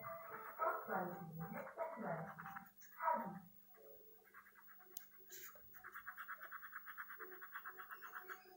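A whining sound that bends in pitch, falling away about three seconds in, then a quieter run of rapid, even pencil strokes shading on paper, about five a second.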